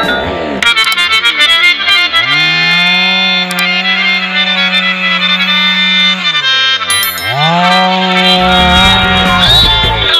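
Background music, joined by a long held buzzing tone that glides up, holds steady for several seconds, drops sharply and glides back up again.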